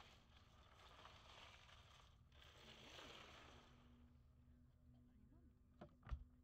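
Near silence: the faint, distant hum of a small aerobatic propeller plane's engine, holding a steady pitch with slight rises and falls, over faint outdoor background noise.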